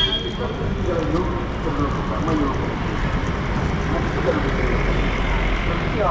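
Street ambience: steady road traffic with indistinct voices of people nearby. A vehicle engine grows louder in the second half.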